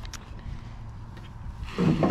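Wind rumbling on an outdoor camera microphone, with a few small handling clicks, swelling louder near the end.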